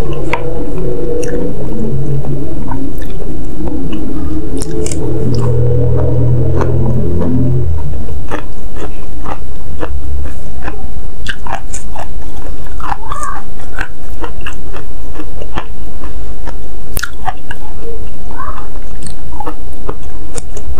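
Close-miked chewing of a mouthful of instant noodles, with wet mouth clicks. After about seven and a half seconds the heavy chewing gives way to scattered sharp clicks and small wet mouth sounds.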